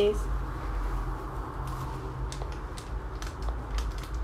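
Faint crinkling and a few light clicks of a small plastic powder packet being handled and tipped into a plastic tray, over a steady low hum.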